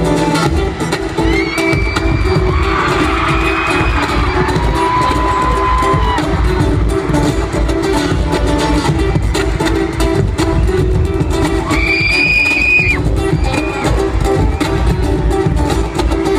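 Live acoustic guitar music played loud over an arena PA, with the crowd cheering; high held cheers rise over it about a second in and again near twelve seconds.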